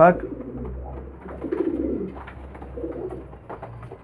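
Domestic pigeons cooing, soft and low, once about a second and a half in and again near three seconds in.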